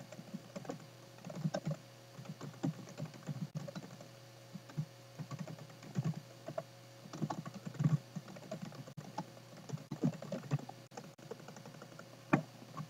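Typing on a computer keyboard: irregular runs of keystrokes with short pauses between them, over a faint steady hum.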